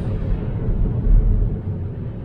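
Low, steady road rumble from the winter tyres heard inside the cabin of a Tesla Model 3 on a wet, slushy street, with a couple of heavier low swells about halfway through.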